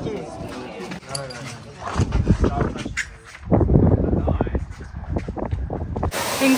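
People talking, mixed with gusty low rumbling of wind buffeting the microphone, heaviest around the middle.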